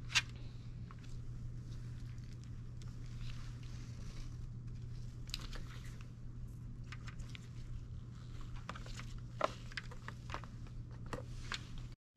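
Faint handling sounds of a plastic Foley catheter kit: small clicks and light rustles as a prefilled saline syringe is attached to the catheter's balloon inflation port, over a steady low hum. A sharper tick comes just after the start and another about nine and a half seconds in.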